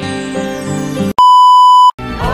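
Acoustic guitar music with held notes, cut off about a second in by a loud, steady electronic beep that lasts under a second.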